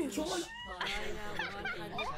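Several women squealing and laughing over one another, in many short high-pitched gliding cries.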